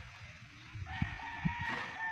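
A rooster crowing: one long, steady-pitched call that starts about a second in.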